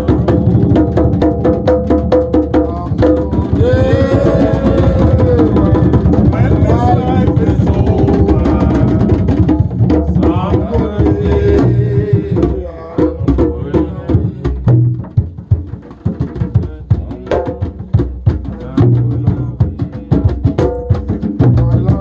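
A group of hand drums, including a djembe and a large barrel drum, played with bare hands in an interlocking rhythm, with a man's voice singing over it. About halfway through the drumming thins out and gets quieter for a few seconds, then fills back in.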